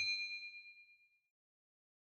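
Bright bell ding of a subscribe-button sound effect ringing out and fading away, gone a little over a second in.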